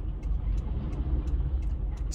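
Low steady rumble of a stationary car idling, heard from inside its cabin, with a few faint light ticks.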